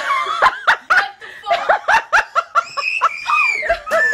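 A woman laughing in surprise, short high-pitched laughs in quick succession, with a longer high cry about three seconds in.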